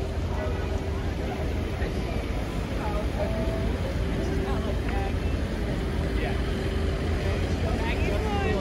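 Busy city street at night: car and bus traffic running, with a low rumble and a steady hum, under the scattered chatter of passing pedestrians.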